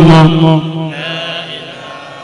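A man's voice chanting, holding one long steady note that ends about half a second in; after it only a much fainter background is left.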